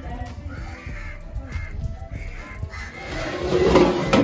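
A bird calling four times in quick succession, about one call every half second, over background music. A louder burst of noise follows near the end.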